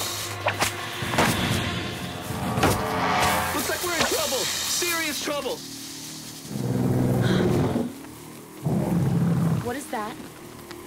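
Background score under strained grunts and cries of effort from people hacking at thick vines, with a few sharp hits early on. Two loud, low, growling bursts come in the second half.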